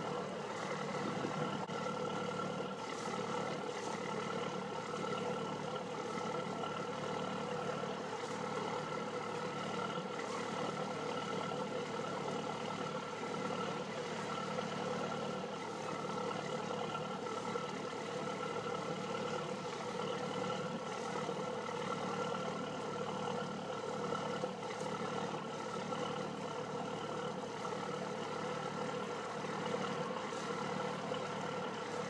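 Boat engine idling, a steady, unchanging hum that holds at one pitch throughout.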